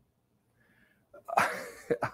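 Near silence, then a little over a second in a single short cough that dies away quickly.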